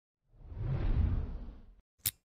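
Intro logo sound effect: a whoosh over a deep rumble that swells up about a quarter second in and cuts off suddenly near the end.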